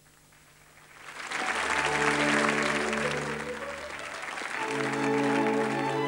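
Audience applause breaking out about a second in and swelling, over held music chords.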